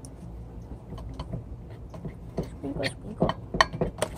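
A metal spoon clinking and scraping against the inside of a stainless steel tumbler as thick flour-and-water dough is stirred: a run of short, irregular clicks.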